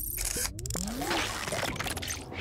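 Logo-reveal sound effects: a glitchy, static-like crackle with scattered clicks and a few short sliding tones over a low rumble.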